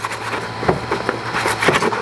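A sheet of paper rustling and scraping against a 3D printer's painter's-tape-covered bed, in a run of irregular crackles, as it is worked under the nozzle as a feeler gauge to check the nozzle-to-bed gap. A low steady hum lies underneath.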